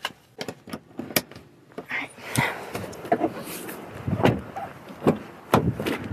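Police body-camera audio: rustling against the microphone and an irregular series of clicks, knocks and clunks as the officer moves around a car.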